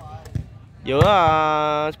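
A man's voice holding one long drawn-out word, which is the loudest sound. Under it, a volleyball is struck a couple of times, giving short dull thuds: one before the word and one as it begins.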